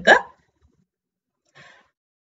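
The end of a spoken word, then a pause in the voice with only a faint, brief sound about one and a half seconds in.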